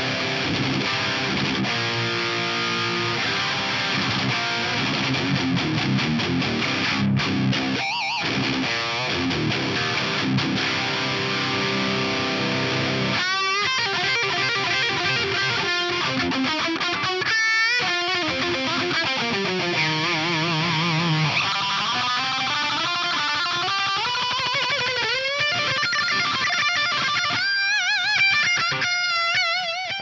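Heavily distorted electric guitar played through the Fender Tone Master Pro's 5153 Stealth high-gain amp model, boosted by a Mythic Drive pedal model. It plays chunky rhythm riffs, then from about 13 seconds in a lead line with wide vibrato and string bends.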